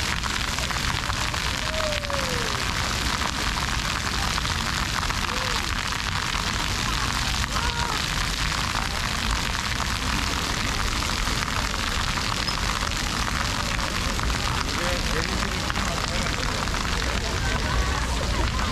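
Rows of arching fountain jets spattering steadily onto wet stone paving, a continuous rain-like hiss, with a low rumble underneath and crowd chatter.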